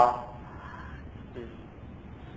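A pause in a man's speech: a word trails off at the start, then only low steady background noise of the recording, with a faint brief voice sound about a second and a half in.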